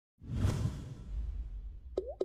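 Whoosh sound effect of an animated logo reveal, with a deep rumble beneath it, swelling quickly a moment in and fading over about a second and a half. A sharp click comes at the very end.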